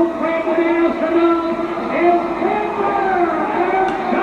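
Sound from old rodeo arena video footage: a voice drawn out in long, steady held notes, its pitch bending a little past the middle.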